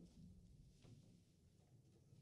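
Near silence: room tone with a faint low hum and a soft knock a little under a second in.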